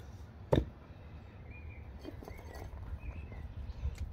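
A single wooden knock as the split log, its four pieces held together by hand, is set down upright on a wooden stump, followed by a quiet outdoor background.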